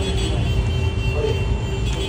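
Steady low rumble of outdoor city background noise, with a few faint steady tones over it.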